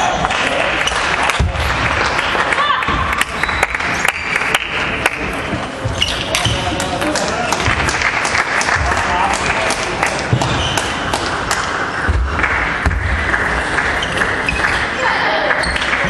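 Table tennis balls clicking off bats and tables, many sharp irregular ticks from several tables at once, over a steady din of many voices in a large hall.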